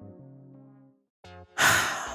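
Held low notes of background music fade out in the first second. After a short gap and a brief note, a loud sigh-like breath follows near the end.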